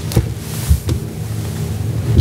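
Papers rustling and a few knocks close to a table microphone, over a steady low hum.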